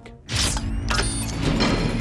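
Film sound effect of a mechanical vault lock working: gears and bolts turning with a dense run of clicks and grinding. It starts suddenly about a third of a second in.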